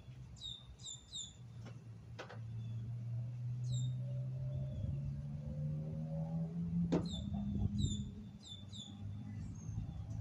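Small songbirds chirping: short, high notes sliding downward, in quick groups of two or three near the start and again in the second half. A low steady hum runs beneath, rising slightly in pitch near the middle.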